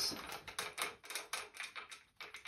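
Quick, irregular light clicks and ticks, several a second, dying away near the end.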